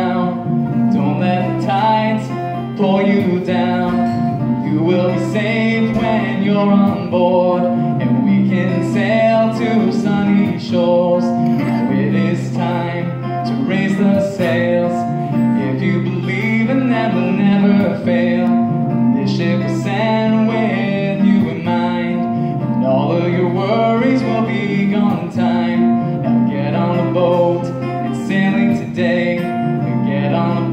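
Acoustic guitar strummed in a steady rhythm, playing a live country-style song with a male voice singing over it.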